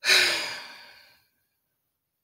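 A woman's sigh: one breathy exhale with a faint voiced hum under it, loudest at the start and fading away over about a second.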